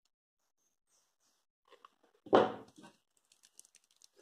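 Near silence, then about halfway through a single short, loud yelp from a puppy, followed by a few faint small clicks.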